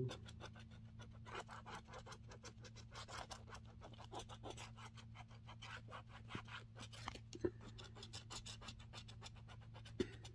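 Scratch-off lottery ticket having its coating scratched away: a fast, continuous run of short, faint rasping strokes, with one sharper tick about seven and a half seconds in.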